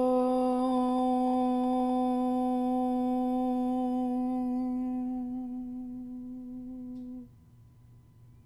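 A woman's voice chanting a single long om, held on one steady pitch in its closing hum. It fades and stops about seven seconds in.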